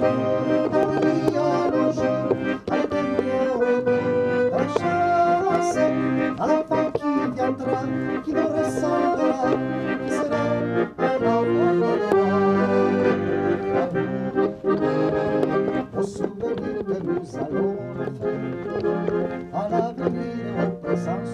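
Weltmeister piano accordion playing a lively tune, with steady bass and chords under the melody, and a man singing along.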